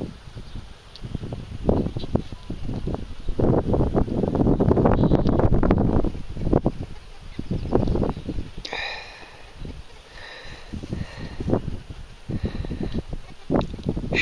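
Wind and handling noise rumbling on the microphone in uneven surges, with faint high pitched sounds about two-thirds of the way in.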